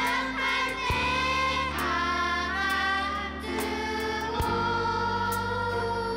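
A group of children and young women singing an Indonesian Christian praise song together, with long held notes, accompanied by a live band with guitars.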